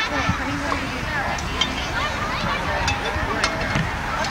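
Background chatter of several overlapping voices from spectators and players at a softball field, with a few faint short clicks.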